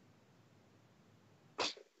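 A single short, sharp noise burst about one and a half seconds in, over faint background hiss.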